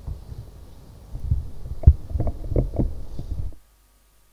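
Low rumble with a run of irregular dull thumps, loudest a little under two seconds in, cutting off suddenly about three and a half seconds in.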